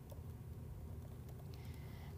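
Faint computer keyboard typing, a few light keystrokes over a low steady room hum.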